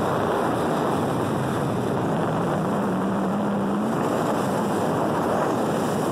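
Motorboat under way at sea: a steady rush of wind, water and engine noise, with a short low hum that rises slightly about two and a half seconds in and lasts about a second.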